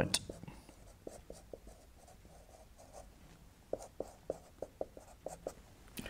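Marker pen writing on a whiteboard: quick short strokes in two runs, a sparse one in the first second and a half and a denser one from about four seconds in.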